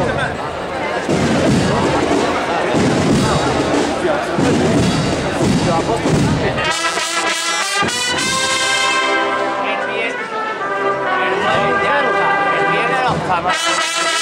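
Crowd noise and voices for about the first half. Then an agrupación musical, a Sevillian band of bugle-cornets and brass, starts playing a processional march about halfway in, with sustained full brass chords.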